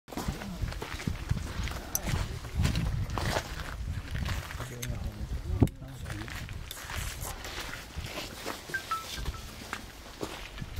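Low, indistinct murmur of people talking quietly, with scattered clicks and knocks; a sharp knock stands out about five and a half seconds in.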